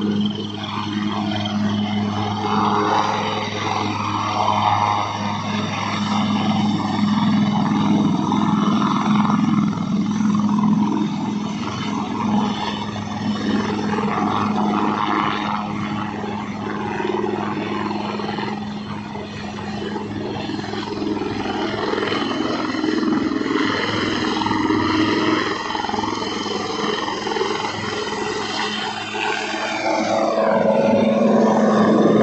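HAL Dhruv helicopter's twin turbine engines and main rotor running at close range, a steady turbine whine over the rotor drone, as it lifts off and hovers.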